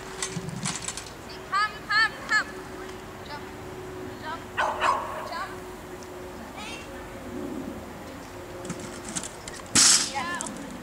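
A dog barking three quick times about one and a half seconds in, with another bark near the middle. Near the end comes a loud sudden bang as the agility teeter board slams down.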